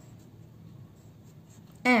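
Faint scratching of a pen writing on a workbook page.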